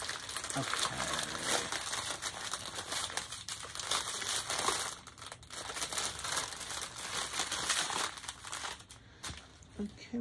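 Thin clear plastic bags crinkling and rustling as hands work small bags of diamond-painting drills out of a cellophane outer wrapper. The crinkling goes quieter near the end.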